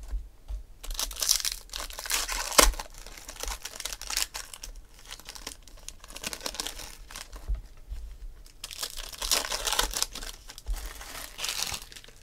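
Foil trading-card pack wrappers crinkling and tearing open by hand, in several separate bursts of rustling, with one sharp snap about two and a half seconds in.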